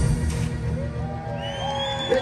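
A live rock band's last chord cuts off at the start, leaving a low note ringing on. The crowd then begins cheering, with scattered rising whoops and a high call in the second half.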